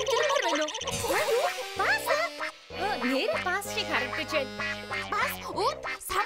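Cartoon character voices making wordless, nasal vocal sounds with sliding pitch, over background music.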